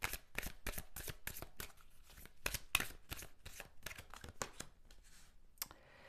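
An oracle card deck being shuffled by hand: a quick, irregular run of card-stock clicks and slaps that thins out in the last second.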